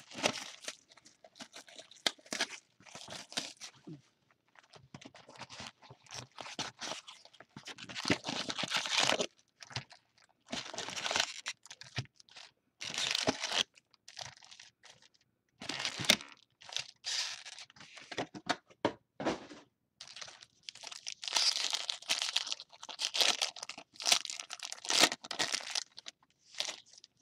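Plastic shrink-wrap and foil trading-card pack wrappers crinkling and tearing as a box is opened and its packs are pulled out and torn open, in irregular bursts with a few sharp crackles.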